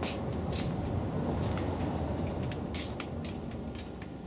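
Leaves and branches brushing against a handheld camera as it pushes through dense foliage, making several short rustles over a steady low rumble.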